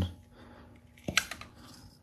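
Small plastic dummy cap pulled off a Molex accessory connector: a sharp plastic click about halfway through, followed by a few lighter clicks.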